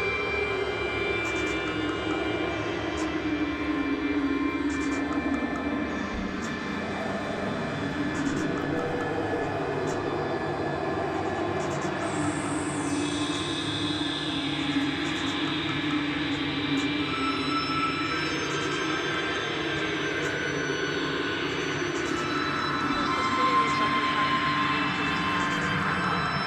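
Experimental synthesizer noise music: a dense, continuous drone of many held tones with slow pitch glides. A low tone slides down over the first several seconds, a high tone drops about halfway through, and rising sweeps build near the end.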